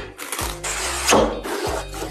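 Cardboard packaging being handled as a kit box is opened, with a rustling scrape about half a second in, over background music.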